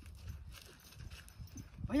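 Quiet open-air background with a low rumble and faint scattered rustles, broken right at the end by a man calling "bhaiya".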